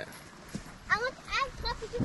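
Three short, faint, high-pitched voice calls about a second in, each gliding up and down in pitch.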